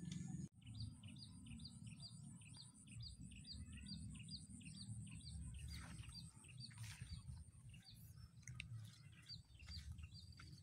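A small bird repeating a short falling chirp, about two a second, over a high steady insect trill in the rice paddies, with a low rumble underneath.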